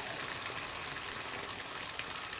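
Tap water running steadily into a bathtub and over the tub floor around the drain.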